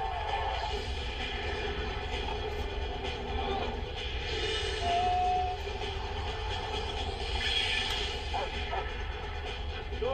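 Trailer background music playing from a TV, heard through the set's speakers in the room, with a brief held note about halfway through.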